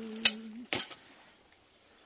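A person humming a short low note, broken by two sharp clicks about half a second apart. After that comes only a faint, steady high-pitched tone.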